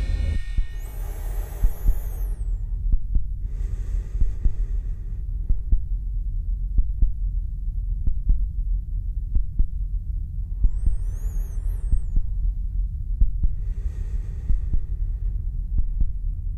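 Electronic sound design: a deep, steady throbbing hum with scattered sharp clicks, and four swells of hiss, two of them topped by wavering high whistles.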